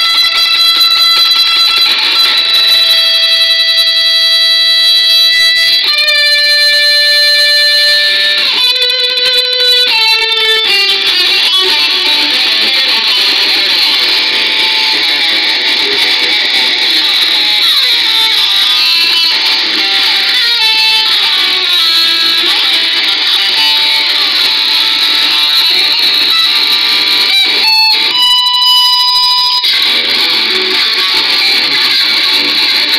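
Electric guitar playing a slow lead line in a metal song. Long held notes step down in pitch over the first ten seconds, then quicker notes follow with slides, ending on one long held note.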